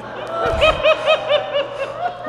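One person in the comedy audience laughing after a punchline: a quick, high-pitched run of 'ha-ha' laughs, about five a second, starting about half a second in.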